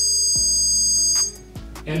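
A digital torque adapter's electronic beeper giving one steady, continuous high beep, the signal that the 15 lb-ft preset torque has been reached; it cuts off about a second and a half in.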